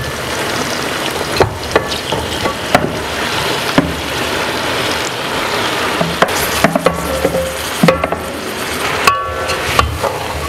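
Food sizzling in a metal cooking pot on a gas stove while a spatula pushes dried catfish flakes off a dish into it, with several sharp knocks and scrapes of the spatula against dish and pot.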